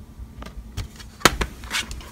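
A few sharp clicks and knocks, the loudest about a second and a quarter in, followed by a short rustle: eyeshadow palettes being handled and shifted in a vanity drawer.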